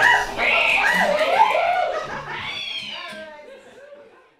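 A live early-music ensemble, with voices and bowed strings, holds wavering notes as the sound fades steadily away over the few seconds.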